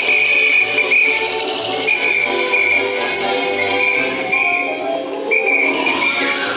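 Music with a pulsing bass line, about two notes a second, under a high melody held in long notes.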